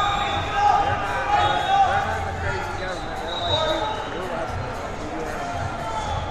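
Indistinct voices of coaches and spectators calling out in a large, echoing hall, with repeated dull thuds underneath.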